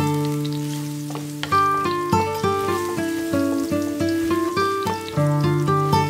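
Minced garlic sizzling in hot oil in a frying pan as it is stirred with a spatula, with a steady high hiss. Background music of plucked notes plays throughout.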